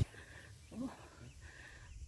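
Faint outdoor wildlife sounds: a high steady buzz that comes and goes, with small repeated chirps. A short spoken 'oh' comes about 0.8 s in.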